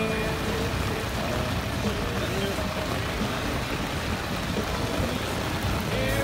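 Heavy rain falling steadily on the lake and the boat, an even, dense hiss heard from under the boat's cover.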